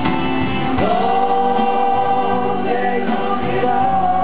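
Live acoustic rock song with acoustic guitars and male voices singing; about a second in, the voices hold one long note for nearly three seconds.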